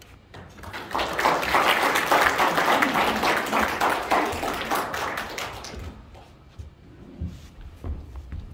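Audience applauding, swelling about a second in and dying away about six seconds in, followed by a few scattered low thumps.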